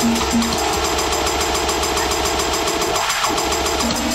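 Electronic dance music from a live DJ set, with a dense, fast percussive rhythm over heavy bass. The bass drops out briefly about three seconds in.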